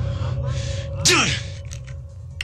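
A man breathing hard in gasps, then about a second in a short vocal sound that falls steeply in pitch, over a low steady drone that fades out.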